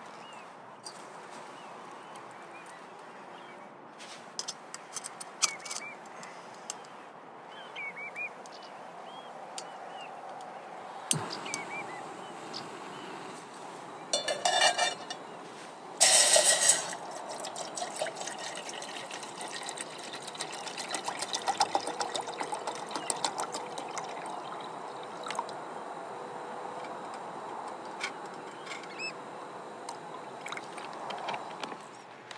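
Water poured from a plastic bottle into a metal cook pot sitting on a small gas canister camping stove, in a few loud splashy pours in the second half. Before that there are light clicks and knocks from the stove being handled.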